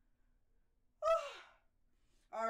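A man's short voiced sigh about a second in, falling in pitch and fading out.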